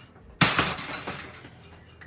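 A sudden crash about half a second in, with a clattering tail that dies away over about a second.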